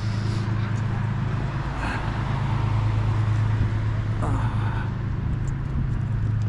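Road traffic on a bridge: a steady low hum with an even wash of noise and faint voices.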